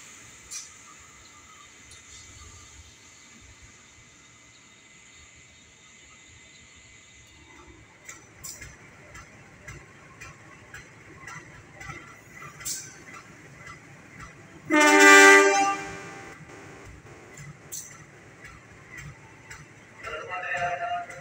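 CC203 diesel-electric locomotive passing, its wheels clicking irregularly over the track from about eight seconds in, then one horn blast of just over a second near the end, the loudest sound.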